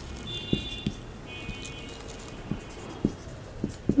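Dry-erase marker writing on a whiteboard: a short high squeak, then a longer one, with light taps of the felt tip between strokes.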